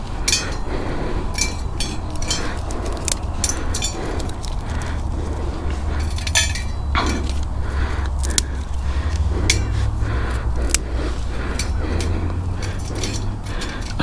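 Dry twigs being snapped and dropped into a small wire-mesh metal stove: a run of irregular sharp cracks and light metallic clinks.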